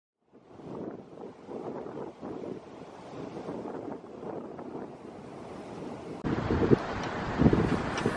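Waves breaking and washing in on a beach, a surging rush of surf. About six seconds in it cuts off abruptly to louder wind buffeting the microphone.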